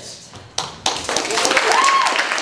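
Theatre audience breaking into applause: two lone claps about half a second in, then the whole audience joins in clapping from about a second in, with a voice calling out over it near the end.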